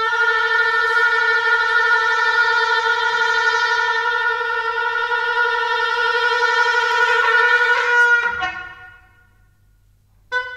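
Solo Rigoutat oboe holding one long, steady note for about eight seconds, then a few quick notes near the end that fade away.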